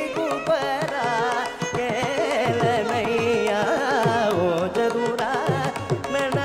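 Carnatic classical singing by a male voice, the pitch swinging in quick oscillating ornaments (gamakas), closely shadowed by violin, with drum strokes underneath.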